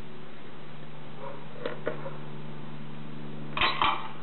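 Watson-Marlow 323Dz peristaltic pump running at 100 RPM with a low steady hum as it dispenses a dose through 6.4 mm tubing. A few light clinks come in the middle, and two sharp knocks come just before the end.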